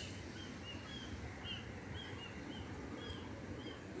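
A bird calling a run of short, high chirps, about three a second, evenly paced, over a faint steady hiss.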